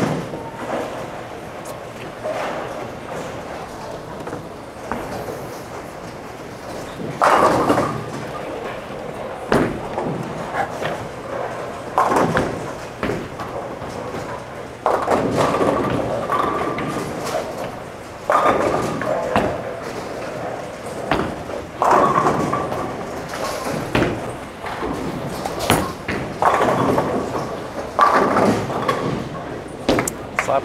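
Busy bowling-alley ambience: background voices in a large echoing hall, with repeated thuds and crashes from balls and pins on nearby lanes.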